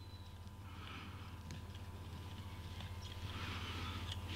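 Faint, soft sizzling of rosin flux and solder melting onto a thick 8 gauge copper cable under a soldering iron tip, growing a little louder near the end, over a steady low electrical hum.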